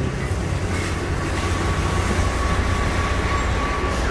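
Steady vehicle rumble and noise, with a faint steady whine from about a second in.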